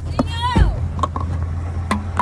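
A pickup truck's engine idling with a steady low hum, heard from inside the cab. A brief high voice falls in pitch about half a second in, and a sharp click comes near the end.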